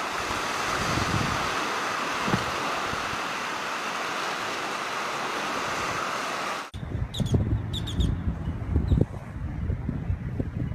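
Steady rush of surf and wind on a beach. After an abrupt cut, irregular gusts of wind rumble on the microphone, with scattered low thumps.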